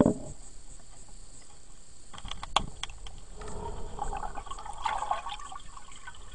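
Muffled water sounds picked up by a camera held underwater in a swimming pool: a thump right at the start, a few sharp clicks about two and a half seconds in, then irregular gurgling water.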